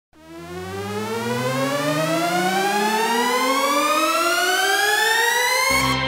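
Electronic synthesizer riser in intro music: one rich tone climbing smoothly and steadily in pitch for about five and a half seconds, then settling into a steady held note with a deep bass note coming in near the end.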